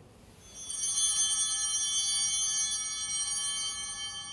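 Altar bell rung at the elevation of the chalice during the consecration: clear, high ringing tones that come in about half a second in and slowly die away.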